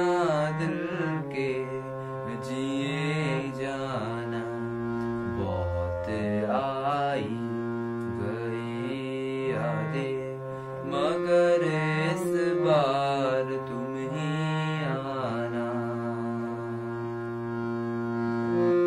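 A man singing long, ornamented notes that bend up and down, over a harmonium holding steady chords.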